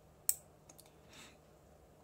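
A small solenoid clicking once as its driver circuit is switched by hand with a jumper wire, followed by a couple of faint ticks.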